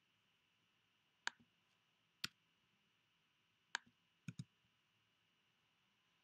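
Five sharp, separate clicks of a computer keyboard and mouse, the last two close together, over near silence.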